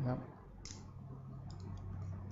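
Scissor blades snipping hair a few times, sharp short clicks with three in quick succession near the end. The tips are held at 90 degrees to point-cut the ends of the hair.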